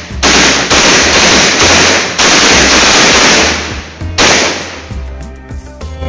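A row of firecrackers laid along the ground going off in quick succession: a dense crackle of bangs for about three and a half seconds, then a second, shorter burst about four seconds in. Background music plays underneath.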